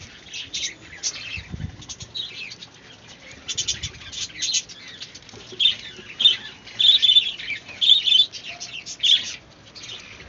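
High, short chirps of small birds in quick bursts, coming thicker and louder in the second half.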